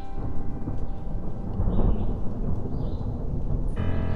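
Rain falling with a low rumble of thunder that swells about halfway through. Piano music comes in near the end.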